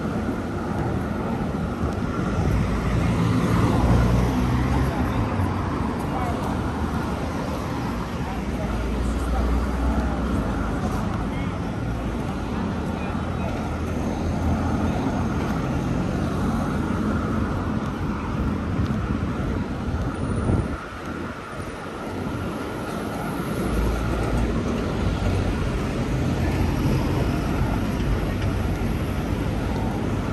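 Busy city street ambience: continuous traffic noise from passing vehicles, with passers-by talking in the background. There is a brief lull about two-thirds of the way through.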